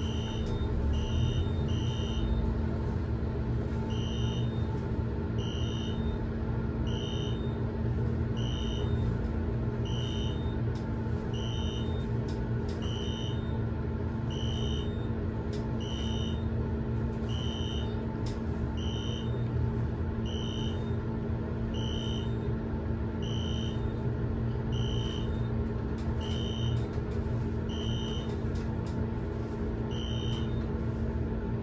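Elevator car descending: a steady low hum from the car in motion, with a short high beep about every one and a half seconds as the car passes each floor.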